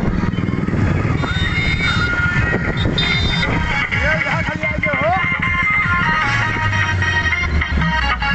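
Music with a singing voice blaring from loudspeaker horns, over the steady running of motorcycle engines and low wind rumble on the microphone of a phone on a moving motorcycle.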